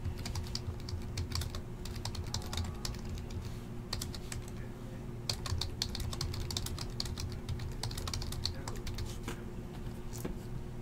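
Typing on a computer keyboard: quick, irregular runs of key clicks with short pauses, over a steady low hum.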